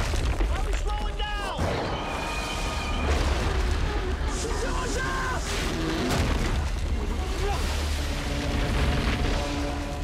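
Film soundtrack of deep, rumbling booms under dramatic music, with a few gliding, whining tones near the start.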